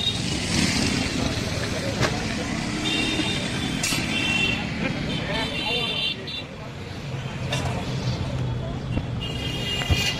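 Busy city street traffic: a steady low engine hum with road noise, and vehicle horns sounding briefly a few times, around three, five and ten seconds in.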